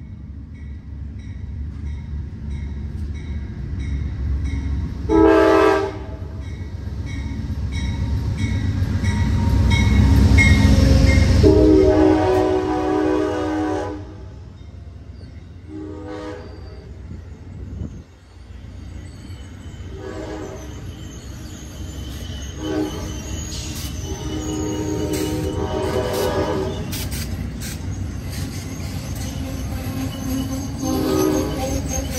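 Amtrak P42DC diesel locomotive's Nathan K5LA five-chime air horn sounding a series of short and long blasts. Under the horn the passing train's low rumble builds to its loudest about ten seconds in.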